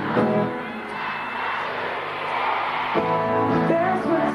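Live acoustic guitar and a stadium crowd: chords ring at the start, then about two seconds of crowd screaming and cheering with little music, before the guitar comes back in about three seconds in.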